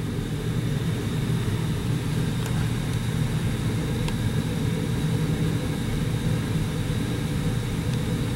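Steady low background rumble with no music playing, broken only by two or three faint ticks.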